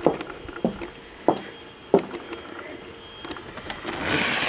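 Footsteps on block paving at a walking pace, a few short knocks about two-thirds of a second apart.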